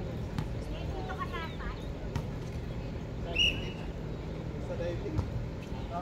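Volleyball being struck by hands in an outdoor game: a few sharp smacks over a steady low hum, with faint distant voices and shouts from players.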